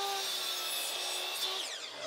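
Miter saw cutting through a softwood rail, its motor giving a steady whine over the noise of the cut. The whine falls in pitch near the end as the saw winds down.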